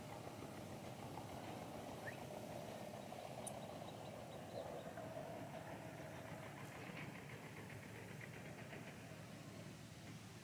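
Faint, steady drone of a distant engine, with light clicking near the end.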